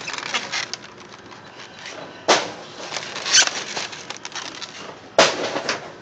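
Egg cartons being handled and shifted in a metal shopping cart: scattered clicks, rustles and scrapes, with two sharp knocks, one about two seconds in and one near the end.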